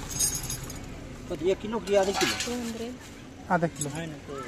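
Steel pans and a weight of a hand balance scale clinking as small fish are weighed and tipped into a bag, with people talking.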